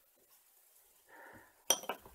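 Mostly quiet, with a faint rustle about a second in, then a brief sharp clink of small hard objects on a tabletop near the end.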